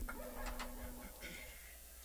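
The last sustained guitar notes of a song ringing out and fading, one of them stopping about a second in, with a few faint clicks and taps from the guitars being handled.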